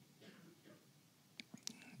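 Near silence: faint room tone in a pause of a lecture, with a few faint clicks in the second half.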